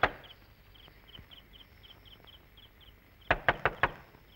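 A quick run of about six sharp knocks, as on a door, near the end, with one knock right at the start. Between them, faint crickets chirp in a steady rhythm.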